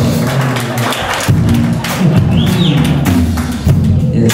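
Live band playing an instrumental passage: electric bass line and drum kit carrying a steady groove, with electric guitar.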